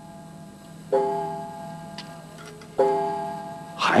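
A chiming clock striking slowly: two bell-like strokes about two seconds apart, each ringing out and fading away.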